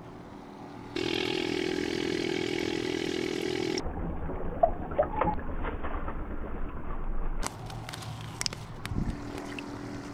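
A steady hum with a hiss over it for about three seconds, cutting off suddenly. Then water sloshing in a five-gallon plastic bait bucket, with small splashes and drips as a hand reaches into it.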